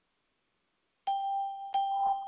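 Two identical electronic chime dings at the same pitch, about 0.7 s apart, the first about a second in, each ringing on and fading. Before them, near silence.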